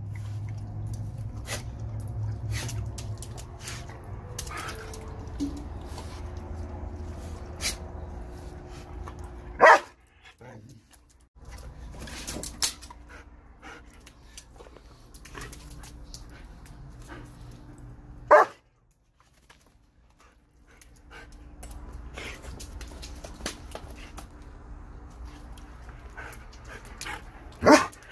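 A German shepherd giving single loud barks, about three spread through, the last just before the end. For the first ten seconds a steady low noise runs under them, and small clicks and knocks are scattered throughout.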